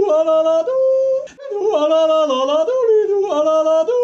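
Wordless music of held, chord-like notes moving from one chord to the next, with a short break about a second and a half in.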